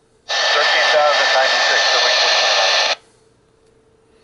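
Icom IC-A20 VHF airband transceiver picking up a brief AM transmission while memory-scanning. Its squelch opens on loud static hiss with a faint voice in it for about two and a half seconds, then cuts off abruptly.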